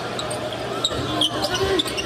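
Basketball arena ambience picked up by courtside broadcast microphones: a basketball being dribbled on the court under a steady murmur of crowd voices.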